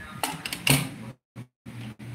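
Two knocks of something being handled, then the audio drops out completely twice for a moment.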